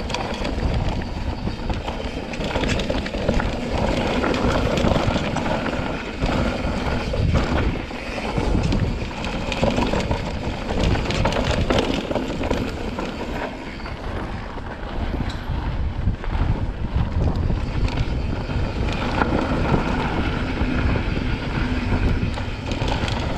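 Mountain bike rolling fast down a dirt singletrack: knobby tyres crunching over dirt and rocks, with the bike rattling over bumps and wind buffeting the camera microphone.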